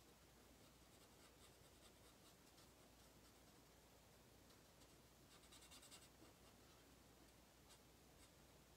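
Faint scratchy strokes of a brush-tip color lifter pen rubbing over stamped cardstock, coming in two short runs, about a second in and again around five and a half seconds in, with a light tick near the end. Otherwise near-silent room tone.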